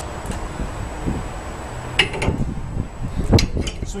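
Metal clinks and knocks of a SuperSprings helper spring's steel shackles and hardware being handled and set onto a truck's leaf spring: a sharp clank about two seconds in, a louder one about three and a half seconds in, and lighter taps between and after.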